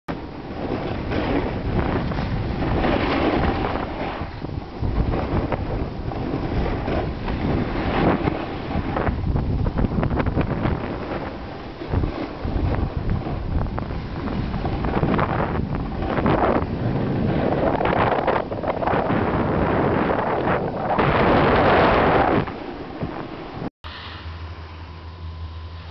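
Wind buffeting a moving camera's microphone on a ski run, mixed with the rush and scrape of snow under the filmer sliding downhill. The rushing surges and eases every second or two, then drops sharply just before the end, with a brief cut-out.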